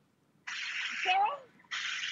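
Shark UltraLight corded stick vacuum sucking air through its crevice tool, in abrupt bursts: one lasting about a second from half a second in, then a shorter one near the end.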